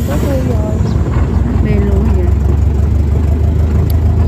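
An engine running steadily with a low hum, with people's voices talking over it.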